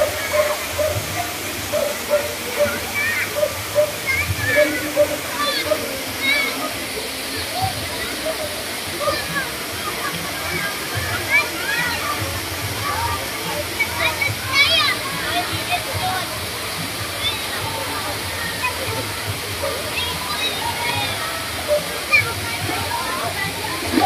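Steady rush of a small waterfall pouring into a spring-fed pool, with water sloshing around bathers. Many people's voices chatter and call over it, with a few high-pitched shouts in the middle.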